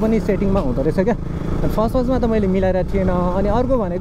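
A person's voice talking over the steady noise of a motorcycle being ridden along a road.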